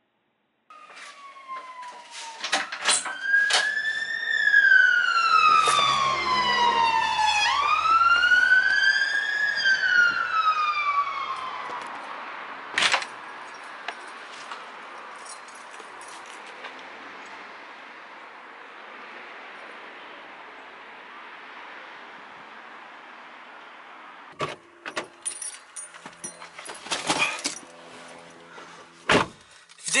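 A siren wailing, its pitch sweeping slowly up and down in long rises and falls, with sharp clicks over it. It fades out about twelve seconds in, leaving a faint steady hiss, and a few clicks and knocks follow near the end.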